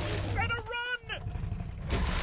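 Film sound effects of dinosaur vocalizations: a low rumble, then a quick run of short cries bending up and down in pitch about half a second in.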